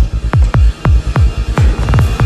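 Dark electronic dance music from a DJ mix: a fast kick drum, each hit a sharp thud that drops quickly in pitch into the bass, over a steady low bass hum.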